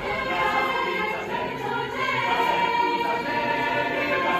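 A large mixed choir singing in harmony, holding long notes that move to new pitches every second or so.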